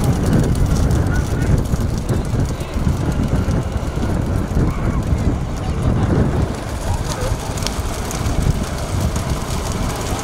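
Steady rumbling wind and road noise on the microphone of a vehicle driving alongside racing bullock carts, heaviest in the low end.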